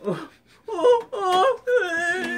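A young man laughing hard: a short laugh at the start, then, from under a second in, a loud, high-pitched laugh that wavers up and down like a wail.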